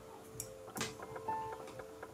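Soft piano background music with held notes, over which a few light, sharp taps of a stylus on a tablet's glass screen sound, the loudest about three-quarters of a second in.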